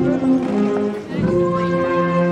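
Brass band playing a slow piece in long held notes and chords, with a brief breath between phrases about a second in.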